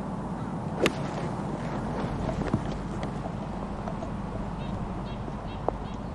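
A golf club strikes the ball once from the fairway: a single sharp crack about a second in. A steady outdoor background follows.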